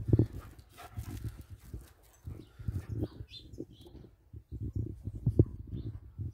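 A greyhound-type dog running about on a grass lawn, its paws thudding on the turf in irregular soft thumps, with a quick run of them about five seconds in.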